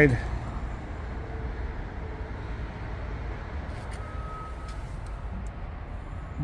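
Steady low rumble of outdoor traffic ambience, with a few faint clicks about four to five seconds in.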